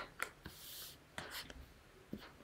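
A few faint, short clicks with a brief soft hiss between them, made while advancing a computer slide show and opening its right-click menu.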